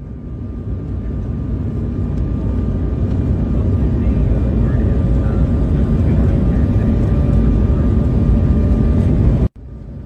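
Airliner jet engines heard from inside the cabin: a steady low rumble that builds over the first few seconds, then holds until it cuts off suddenly near the end.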